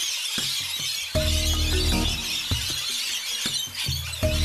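Background instrumental music: sustained pitched notes over a low bass, in repeating phrases, with an even high hiss throughout.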